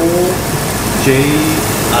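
Pork belly sizzling on a charcoal tabletop grill, a steady hiss, over the steady hum of the grill's ventilation.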